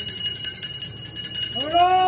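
Small brass hand-held puja bell rung rapidly and continuously with steady metallic ringing. Near the end a voice starts a long, drawn-out call.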